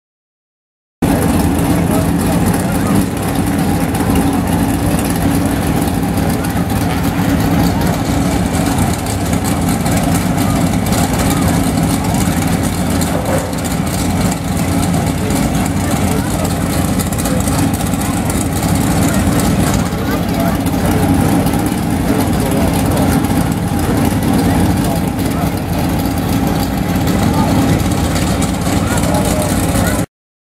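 Several race car engines idling together, a steady low sound that begins abruptly about a second in, with voices mixed in.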